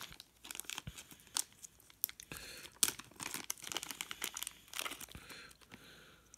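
Small clear plastic parts bag crinkling and being pulled open, an irregular run of sharp crackles that eases off near the end.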